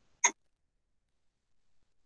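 One brief throat or mouth sound, a short vocal catch, about a quarter second in; the rest is near silence.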